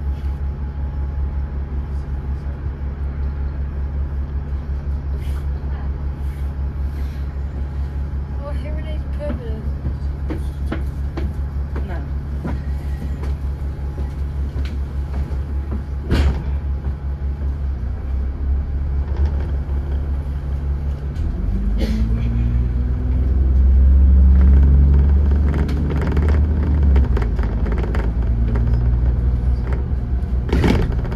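Diesel engine of a Dennis Trident 2 double-decker bus idling with a steady low hum, then revving up as the bus pulls away about two-thirds of the way in. It rises in pitch and is loudest a few seconds later before easing off. A single sharp click sounds about halfway through.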